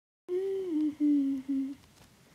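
A voice humming three held notes after a short silence. The first note slides down partway through, and the next two are each a little lower, with brief gaps between them.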